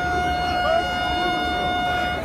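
A steady, high-pitched horn note, held at one pitch without wavering, over crowd voices and chatter.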